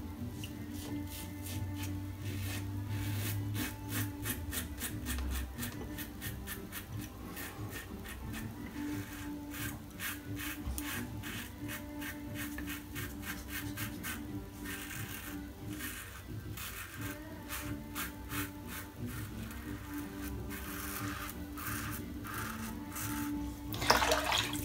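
Karve Christopher Bradley safety razor with a Gillette Super Stainless blade scraping through lathered stubble in many short, quick strokes, with background music underneath.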